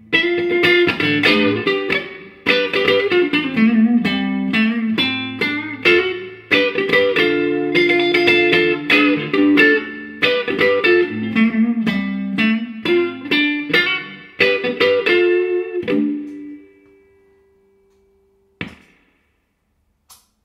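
Electric guitar played through a Laney Cub Supertop valve amp head, a picked riff of single notes and chords. The playing stops about 16 seconds in, leaving one note to ring out, and a single short strike follows near the end.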